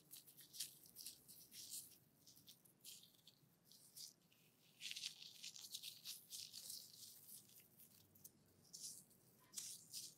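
Close-miked hand sounds: soft crackling and rustling of fingers working over a small white bottle and the white cream or pad in the hands, coming in uneven clusters and busiest about five seconds in.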